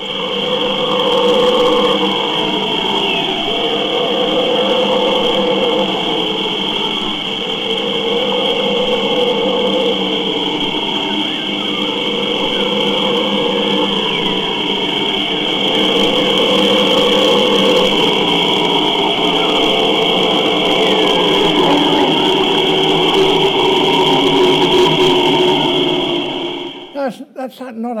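An old field recording of howler monkeys howling, played back over loudspeakers. It is a long run of swelling calls, each lasting a couple of seconds, over a steady high-pitched whine, and it is distorted, almost like a train in a tunnel.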